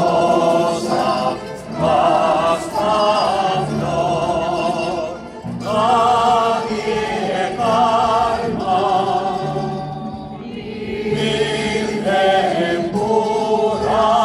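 A choir singing a gozos, a Spanish devotional hymn of praise. The voices hold long notes with vibrato, phrase by phrase, with short breaks between the phrases.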